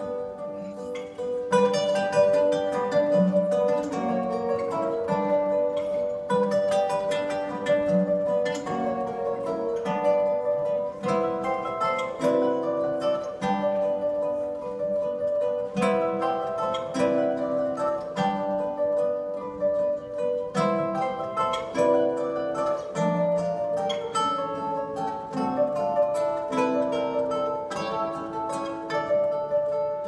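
A quartet of classical guitars playing a waltz together, plucked notes throughout.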